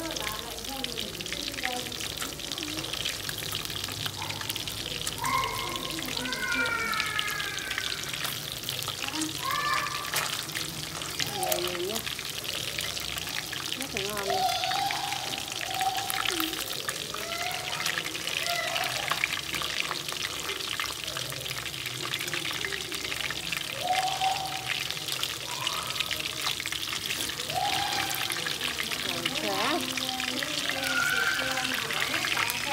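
Catfish pieces sizzling steadily in hot oil in a wok, a dense crackle of spitting oil throughout.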